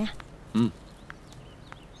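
A man's short, low 'ừ' grunt of assent about half a second in, then quiet background ambience with a few faint, brief chirps.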